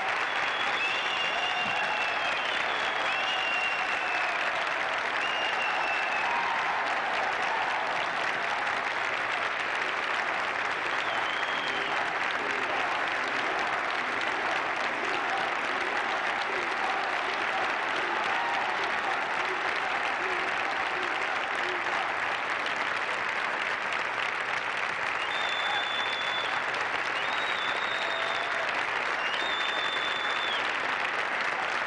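A large crowd applauding steadily without a break, with voices calling out over the clapping.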